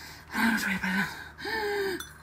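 A woman's voice making two short breathy sounds with no clear words, the second higher in pitch than the first.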